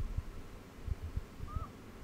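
Faint, distant children's voices outdoors, with one short high call about three-quarters of the way through, over a few soft low thumps.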